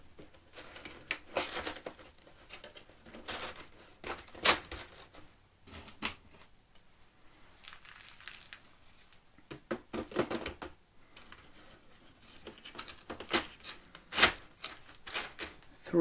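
Porous ceramic filter-media balls and hard plastic media trays clicking and rattling as the trays are handled and set into a canister filter, an irregular clatter that comes and goes.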